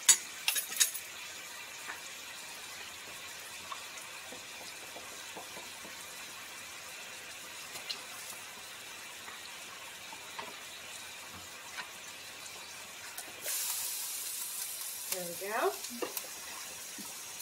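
Pork strips sizzling in a frying pan, a faint, even hiss, with a short clatter of a utensil being set down about a second in. Near the end, a louder rushing hiss joins as fresh ramen noodles go into the pot of water.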